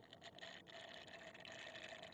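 Faint, steady sipping of milk through a drinking straw from a carton.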